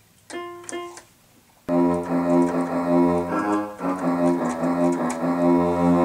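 Electronic keyboard sounding a brief chord, then, just under two seconds in, a loud held chord that is spooky-sounding and lasts to the end.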